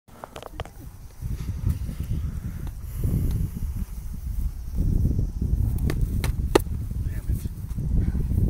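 Wind buffeting the microphone: a low, uneven rumble, with a few short sharp clicks near the start and three more a little after six seconds in.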